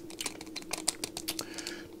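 Small clear plastic bag of electronic components handled in the fingers: a run of irregular light clicks and crinkles as the parts shift against each other and the bag.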